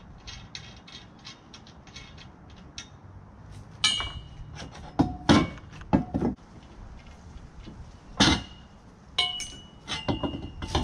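Metal tubes of a hammock stand being taken apart: a run of quick light clicks, then several sharp metal clanks, with short ringing, as the poles knock together and are laid on a wooden deck. The clanks are loudest in the second half.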